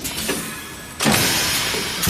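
Plastic egg-tray thermoforming machine cycling: a quieter running stretch, then about a second in a sudden loud rushing noise that slowly dies away.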